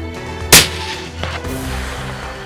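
A single rifle shot about half a second in, sharp and loud with a short ringing tail, over steady background music.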